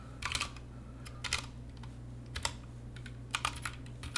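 Computer keyboard keys clicking in a few short, irregular bursts of typing as a line of code is entered, over a faint steady low hum.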